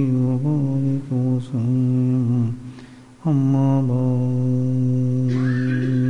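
A man's voice chanting devotional verse in long held notes, breaking off about two and a half seconds in, then holding one long steady note until near the end.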